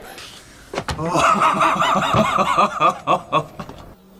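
A person laughing: a quick run of ha-ha sounds starting about a second in and lasting about two and a half seconds, with a few sharp clicks near the end.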